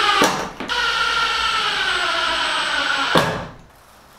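Cordless drill driving a screw into the window frame. The motor runs, stops briefly with a couple of clicks, then runs again for about two and a half seconds, its pitch sagging slightly under load, and cuts off with a click near the end.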